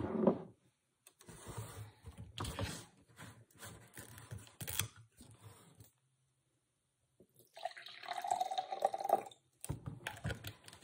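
A large plastic juice jug being handled on a table, with the juice sloshing inside it. The sound comes in two stretches with a silent break between them, and the second stretch, near the end, has a clearer liquid tone.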